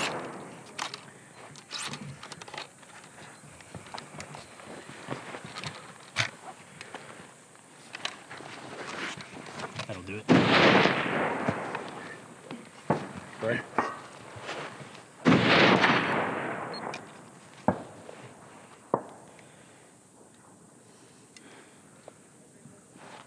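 Two rifle shots about five seconds apart, each followed by a long echo that dies away over a second or so. Between them come small clicks and rustles of gear being handled.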